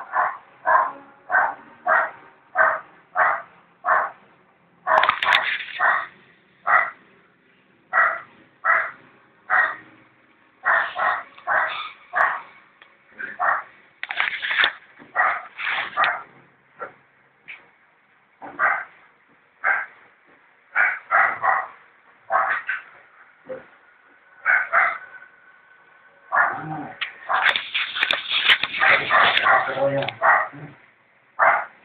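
A dog barking repeatedly, about one to two barks a second, in runs with short pauses between them, and a denser flurry of barks near the end.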